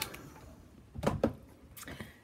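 A sharp click, then a short low knock about a second in: a handheld craft heat tool being switched off and set down on the craft mat.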